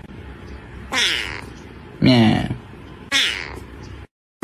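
A sleeping kitten making short mews that fall in pitch, three of them about a second apart, with a steady hiss between them.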